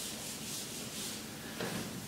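Handheld whiteboard eraser rubbing across a whiteboard, wiping off writing.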